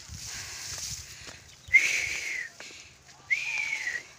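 Two loud, close whistles, each a single clear note that jumps up and then slowly sags in pitch. The first comes a little under two seconds in and the second near the end.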